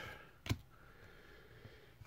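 A single sharp click about half a second in, as trading cards are shuffled in the hands; otherwise faint room tone.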